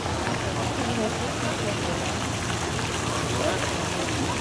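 Indistinct chatter of many people over a steady background rush.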